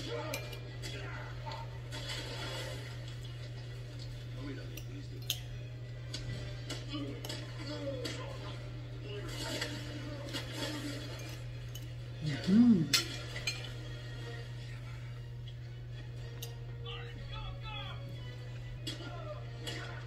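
A metal fork clinking and scraping on a ceramic plate during eating, in scattered short clicks over a steady low hum. A brief loud voice sound, the loudest thing here, comes about twelve and a half seconds in.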